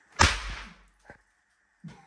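An oversized throw-down snap pop (bang snap) bursts with a single sharp crack as it hits the floor a moment in, ringing briefly in the small room. A faint click follows about a second later.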